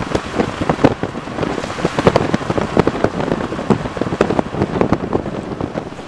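Heavy rain hitting a car's roof and windows, heard from inside the car: a loud, dense, irregular patter of drops.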